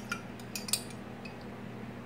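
A few light clinks of a metal table knife against a stainless steel mixing bowl, bunched in the first second, over a faint steady hum.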